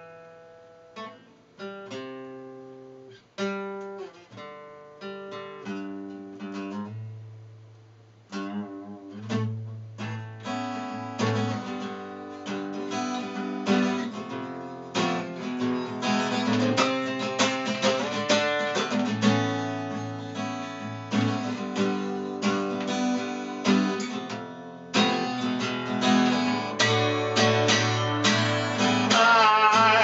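Acoustic guitar played solo: sparse single notes that ring and fade, building from about eight seconds in into fuller, louder strumming. A man's singing voice comes back in right at the end.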